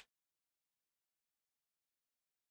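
Near silence: the track drops to almost nothing between the player's sentences.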